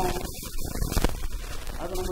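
A man's voice talking into a microphone, with a low rumble underneath.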